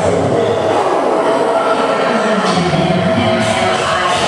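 Loud music playing over a dance studio's sound system, with a low sliding tone about two and a half seconds in.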